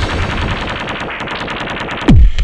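Rapid, even rattle of sharp clicks, about a dozen a second, from an intro sound effect under an animated logo.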